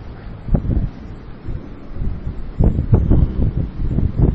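A man's muffled voice speaking in short bursts, about half a second in and again from about two and a half seconds, over a steady low rumble and hiss from a noisy, low-quality recording.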